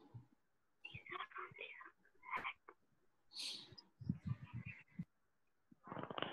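Faint, indistinct voices, partly whispered, heard in short broken stretches through a participant's video-call microphone.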